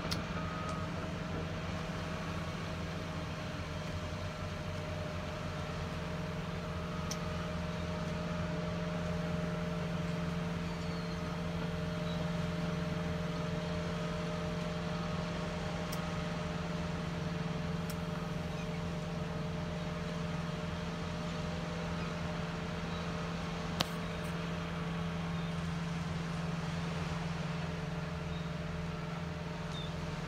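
Steady low machinery drone: a constant hum that firms up slightly about six seconds in, with a few faint ticks.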